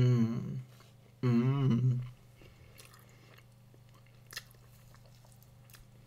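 A person humming a closed-mouth "mmm" of enjoyment twice while eating, each hum about a second long with a wavering pitch, the second just past a second in. Faint chewing and mouth clicks follow.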